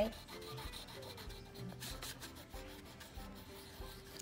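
Yellow crayon rubbing quickly back and forth over paper, a quiet, steady run of short scratchy strokes as a page is coloured in.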